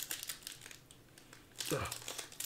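Plastic foil wrapper of a trading card pack crinkling in the hands, busiest in the first half second and sparser after; a man's short groan, "ugh", near the end.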